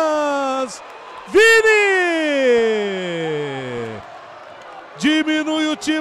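A male football commentator's drawn-out goal cry, a held vowel sliding steadily down in pitch. A first long call trails off early, then a second falls from high to low over more than two seconds. Ordinary commentary picks up again about a second before the end.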